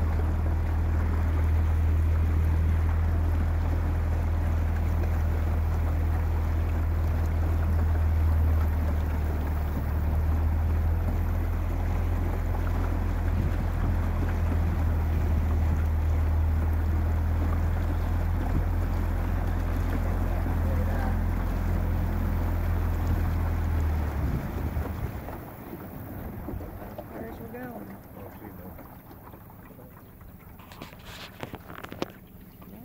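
A small boat's motor running steadily with a low hum, over the rush of water and wind as the boat moves along. About 25 seconds in, the hum stops and only quieter water and wind noise is left.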